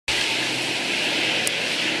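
Steady, even rushing of a heavy downpour, starting abruptly and cutting off suddenly at the end.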